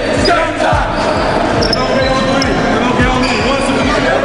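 Basketballs bouncing on a gymnasium floor in repeated thuds, with players' voices echoing in the hall and a few short high squeaks.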